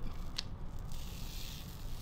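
Gloved hands handling and pulling open a sticky, resin-coated casting sock: a small click about half a second in, then a soft rustle of about a second.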